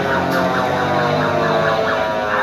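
A children's carousel playing its electronic ride music: a loud, steady tune of several wavering, gliding tones.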